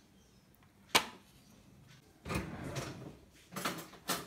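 Kitchen handling sounds: one sharp knock about a second in, then two stretches of rustling and clattering from about two seconds in.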